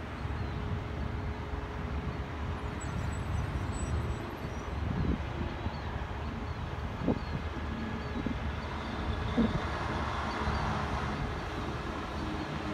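Steady low rumble of road traffic, with a few brief faint chirps in the middle and later part.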